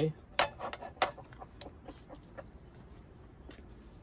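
A few light clinks and knocks as a turbo broiler's glass bowl with its metal rim is set down on the plastic base unit, the sharpest about a second in, with one more later on.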